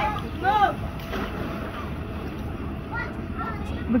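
Children's voices calling out at a distance, a few short high-pitched calls near the start and again about three seconds in, over a steady rushing noise.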